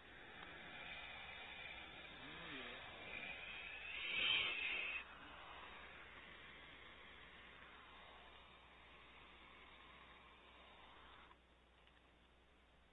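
Barn owl owlets hissing in the nest cavity. The hiss swells to its loudest about four seconds in and breaks off sharply at five seconds. A quieter hiss follows and stops abruptly near the end.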